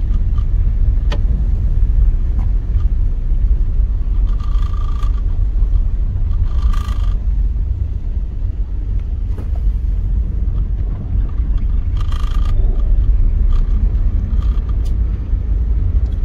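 Steady low rumble of a car driving slowly on a paved road, heard from inside the cabin: engine and tyre noise.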